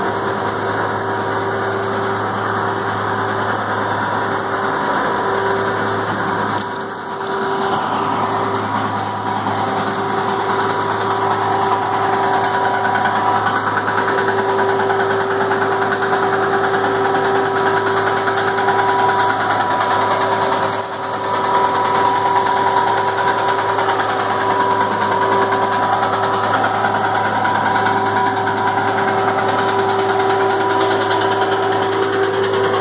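Heavy machinery diesel engine running steadily at idle: a constant hum with several steady tones, dipping briefly twice.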